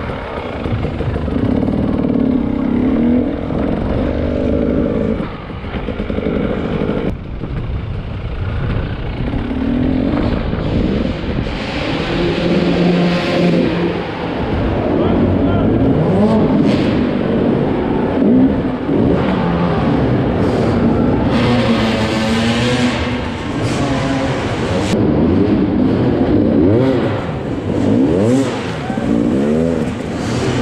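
KTM 300 EXC's single-cylinder two-stroke engine revving up and down again and again as the bike is ridden, the throttle opened and closed over rough ground.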